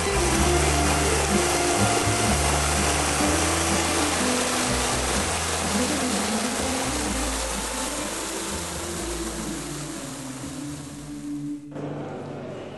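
Steady loud rush of churning, splashing water, cutting off suddenly just before the end, over background music with low sustained notes.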